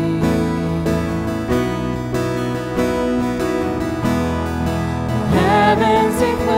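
Live worship music: guitar chords over sustained notes, changing chord every second or so. A man's voice comes in singing about five seconds in.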